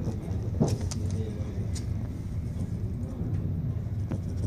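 A steady low rumble, with a few short light clicks in the first two seconds.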